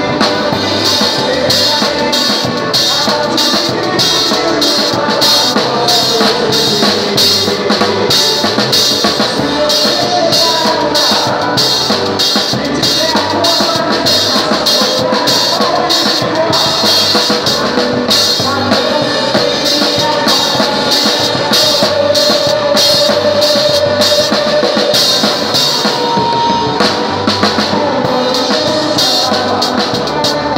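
Drum kit played close up in a fast, steady forró beat of bass drum, snare and cymbals, with the rest of the band's melody instruments playing along.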